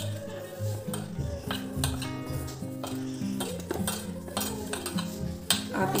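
A hand mixing and squeezing sattu (roasted gram flour) filling in a steel bowl, with repeated scrapes and clinks against the bowl. Background music with a run of low notes plays underneath.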